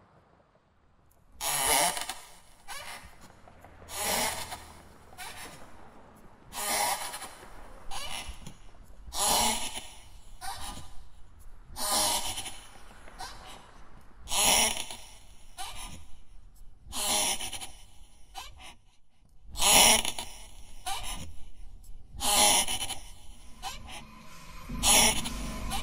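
A person breathing slowly and heavily, with a loud breath about every two and a half seconds and softer ones between. A faint low drone runs underneath.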